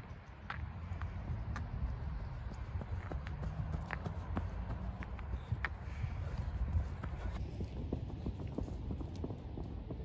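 Footfalls of several runners on snow-dusted grass, irregular steps coming closer and passing, over a low rumble of wind on the microphone.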